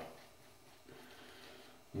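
Faint, soft swishing of a Shavemac D01 silvertip shaving brush working Proraso Red lather over the cheek and neck.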